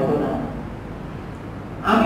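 A man's preaching voice: a phrase ends just after the start, a pause of about a second and a half with only low room noise follows, and speech resumes near the end.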